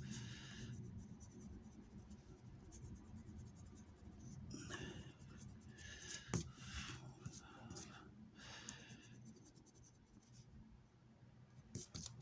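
A coin scratching the coating off a paper scratch-off lottery ticket in short, faint bursts, with a single sharp click about six seconds in.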